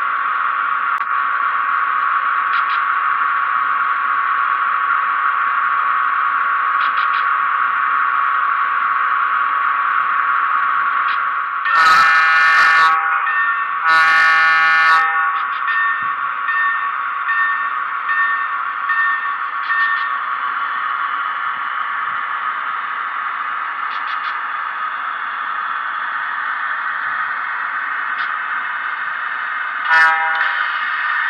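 SoundTraxx Econami DCC sound decoder in an HO scale box cab locomotive playing its standing sound through the model's speaker: a steady buzzing hum, set too loud on the bass speaker so it comes out harsh. Two short horn blasts sound about 12 and 14 seconds in.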